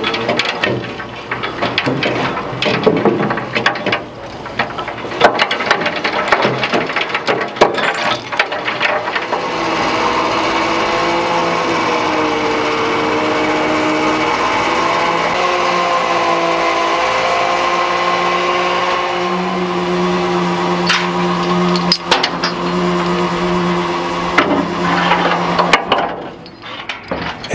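Knocks and clatter of trawl gear being worked, then from about ten seconds in the steady whine of the trawler's net reel drive as it pays out the net, its pitch shifting in steps as the speed changes.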